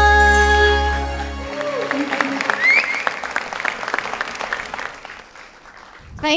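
A live band's final held chord ringing out and stopping about a second and a half in, followed by audience applause that gradually dies away near the end.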